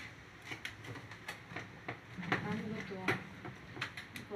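Scattered clicks and knocks from a makeup trolley case's trays and fittings being handled, with a short wordless murmur a little past the middle.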